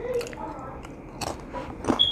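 A person chewing and biting food close to a clip-on microphone, with a few short, sharp crunchy clicks.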